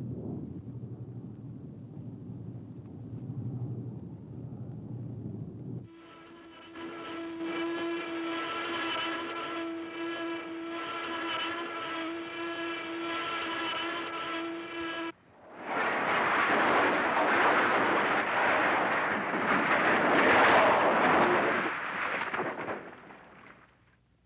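Warplane engine sounds on an old film soundtrack: a low engine rumble, then a steady high-pitched engine drone that stops suddenly about fifteen seconds in, followed by a loud rushing roar that lasts several seconds and then fades out.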